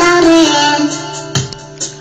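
A Romanian song playing: a sung vocal line over guitar accompaniment. The voice ends about a second in, leaving the instrumental backing with sharp beat hits.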